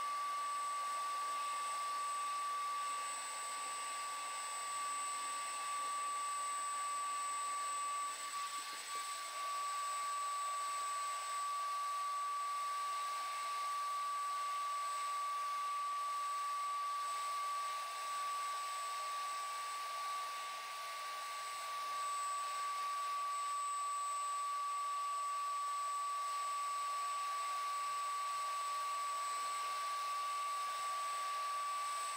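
HVLP turbine paint-spray unit running steadily while its gun sprays liquid rubber dip: a constant high whine over a rush of air.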